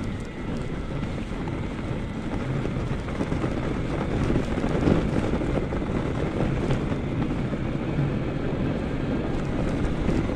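Wind rumbling on the microphone of a moving e-bike, mixed with its studded fat tires rolling over packed snow; the noise is steady and grows a little louder about halfway through.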